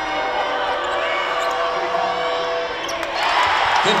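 Basketball game sounds in an arena: sneakers squeaking on the hardwood court over crowd noise, then the crowd breaks into loud cheering about three seconds in as a basket is scored.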